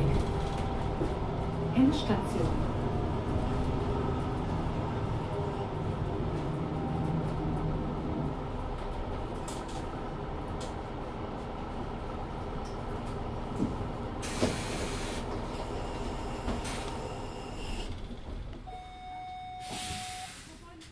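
Onboard a 2014 Mercedes-Benz Citaro 2 LE city bus: the Daimler OM 936 h diesel engine hums steadily, then fades after about eight seconds. Two short hisses of air follow in the second half, and a steady beep sounds near the end.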